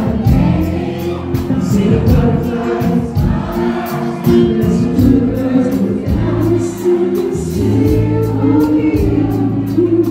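Live band music with a male lead vocal over drums, bass guitar, electric guitar and keyboard, carried by a steady hi-hat beat.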